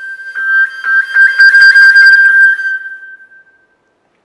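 Flute holding a top G as overblown harmonics while the fingerings change constantly, so the note's colour flickers rapidly as its overtones shift. It swells, then fades away a little past three seconds in.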